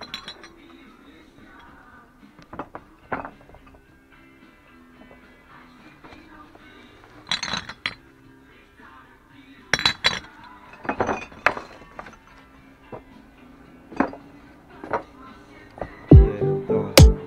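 Empty glass bottles clinking against each other as they are handled and moved. The clinks come in short clusters, the loudest in the second half. Faint music plays underneath.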